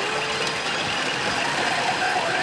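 Steady din of a pachinko hall: many machines running at once in a continuous wash of noise, with faint electronic tones from the PF Mobile Suit Gundam Unicorn pachinko machine in play.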